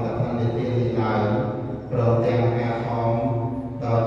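Theravada Buddhist monks chanting Pali on long held, even pitches, with a short break for breath about two seconds in.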